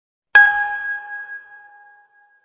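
A single bell-like ding sound effect, struck once about a third of a second in, then ringing out and slowly fading.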